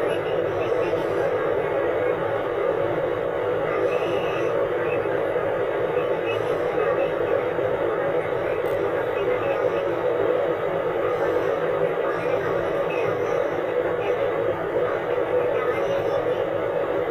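A person's voice talking without pause, with music underneath.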